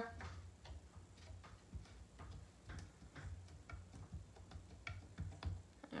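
Faint, irregular light clicks and taps as fingers press a clear stamp against the side of a painted wooden drawer, with low handling rumble underneath.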